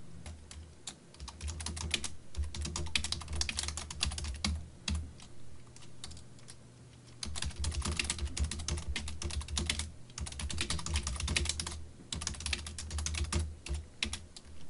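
Computer keyboard typing in quick runs of keystrokes, with a pause of about a second just past the middle.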